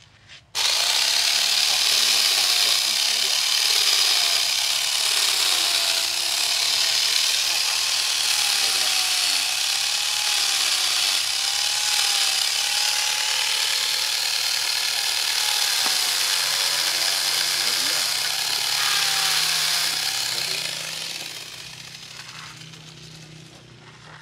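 Chainsaw cutting into the wood of a large bonsai trunk: it starts suddenly and runs at high speed for about twenty seconds, its pitch dipping and rising as the chain bites, then winds down near the end.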